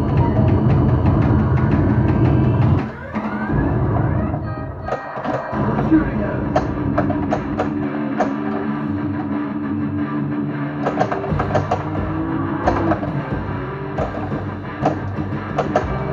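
Williams Getaway: High Speed II pinball machine in play: rock-style game music and voice callouts from its custom PinSound audio mix, with sharp clacks of the flippers and the ball hitting parts of the playfield. The music drops out briefly with a sweeping sound about three seconds in, and the clacks come thick from about five seconds on.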